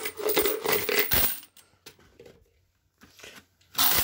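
Spent 7.62x39 brass rifle cartridge cases clinking and rattling against each other as a hand stirs through them, with a dull knock about a second in. After a short lull, a loud burst of clattering brass near the end as the hand digs into a bucket of cases.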